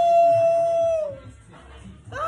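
A man's long "woo" shout, held on one steady high pitch, that slides down and ends just over a second in.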